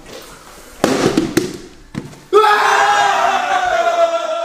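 A brief burst of noise with a couple of sharp knocks, then, a little past halfway, a person's loud, long, high-pitched yell that starts suddenly and slowly falls in pitch.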